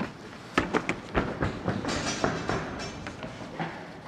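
An irregular run of sharp knocks and clicks, several a second, starting about half a second in and running until near the end.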